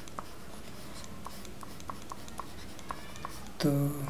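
Stylus writing on a tablet: small, irregular taps and scratches over a steady low hiss as handwriting is drawn.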